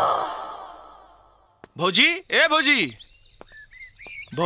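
Film-song music fading away over the first second and a half, then a man's voice giving two drawn-out exclamations, each rising and falling in pitch.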